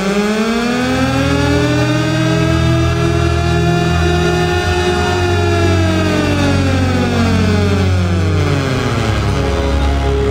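Opening theme music: a sustained electronic tone that slowly rises in pitch to about halfway, then glides back down, over steady low bass notes.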